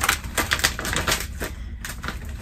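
Plastic bag of frozen mandu dumplings crinkling and tearing as it is pulled open by hand, a rapid irregular run of crisp crackles.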